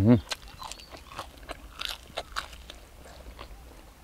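A person biting and chewing grilled field rat meat close to the microphone, with small crunchy clicks at irregular intervals. There is a short voiced sound at the very start.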